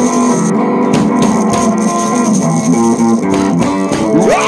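Instrumental funky blues: guitar playing a run of held notes over bass guitar, with steady drum hits keeping the beat.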